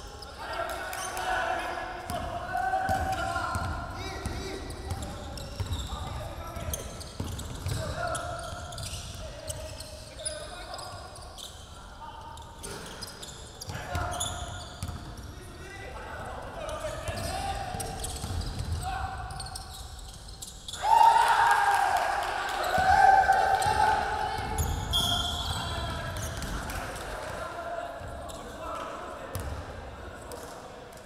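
Basketball being dribbled on a hardwood gym floor, with players calling out to each other. About 21 seconds in comes a sudden burst of loud shouting, the loudest part. Everything echoes in the large hall.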